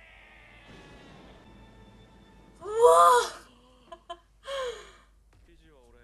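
A person's voice: a loud, drawn-out exclamation whose pitch rises and falls, about two and a half seconds in. A second, shorter exclamation falls in pitch about a second and a half later.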